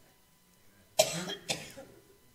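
A person coughing twice, two short coughs about half a second apart.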